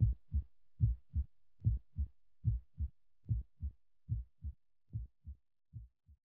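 Heartbeat sound effect: a steady lub-dub of paired low thumps, one pair about every 0.8 seconds, growing fainter toward the end.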